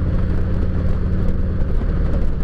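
Harley-Davidson touring motorcycle's V-twin engine running steadily at highway cruising speed, heard from the rider's seat along with the rush of wind and road noise.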